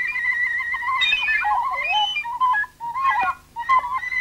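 A flute playing a free solo melody with sliding, bending notes and quick ornaments, broken by two brief gaps about three seconds in.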